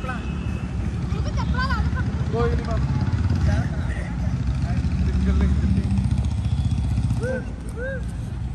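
A loud, uneven low rumble, with people's short calls and shouts breaking in over it at intervals.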